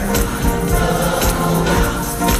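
Live gospel music: a choir singing with instrumental accompaniment, over a steady beat of hand claps.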